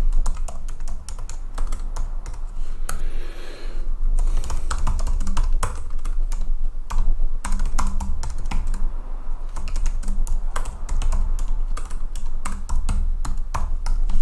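Typing on a computer keyboard: a quick, uneven run of key clicks with a few short pauses.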